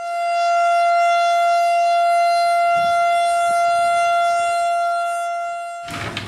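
A loud, steady siren-like tone held at one pitch with a stack of overtones. It swells in at the start, eases slightly near the end and cuts off just before the end.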